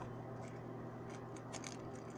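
Faint crisp rustling of Bible pages being turned, a few scattered ticks over a steady low electrical hum.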